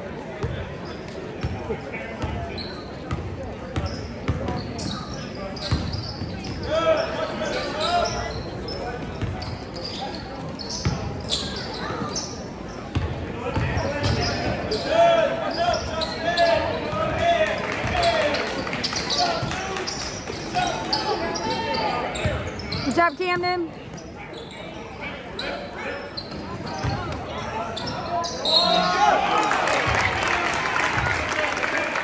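A basketball being dribbled and bouncing on a gym's hardwood court, with players' and spectators' voices echoing in the large hall. The voices get louder near the end.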